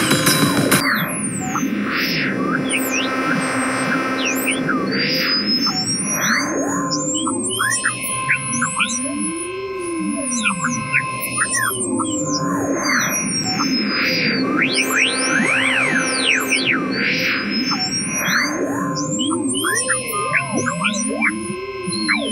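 ANS3, a virtual Soviet ANS optical synthesizer, playing a hand-drawn score: many pure tones swoop and arc up and down, with long high whistling glides over a low hum and swelling washes of sound. The same phrase comes round again about halfway through.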